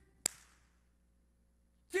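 A single hand clap about a quarter second in, then quiet room tone.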